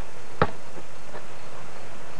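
A basketball bouncing once with a single sharp knock, over a steady hiss.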